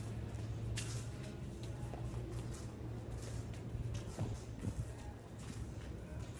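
Soccer ball tapped quickly between the feet and shoes scuffing on a concrete floor, an irregular run of soft touches several times a second, over a low steady hum.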